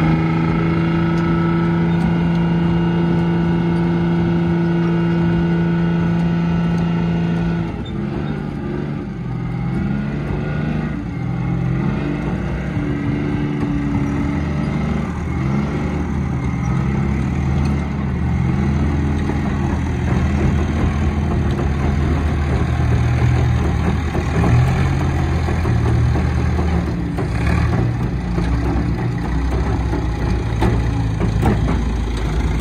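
Heavy vehicle engines working hard under load as a tracked recovery vehicle and a wheeled loader move a derelict Centurion tank. One engine revs up and holds a steady high note for the first several seconds, then the revs rise and fall, and a second, deeper engine note joins about halfway through.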